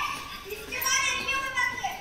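A child's high-pitched voice calling out, from about half a second in until near the end.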